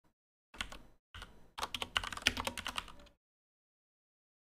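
Computer keyboard typing: quick runs of keystrokes, a short burst about half a second in and a longer, denser one from about a second to three seconds.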